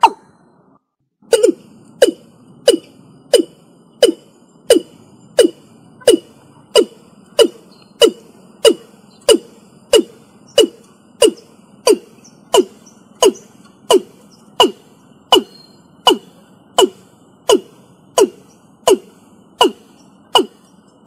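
Watercock (Gallicrex cinerea) calling: a short, low note sliding down in pitch, repeated steadily about three times every two seconds, resuming after a brief break about a second in.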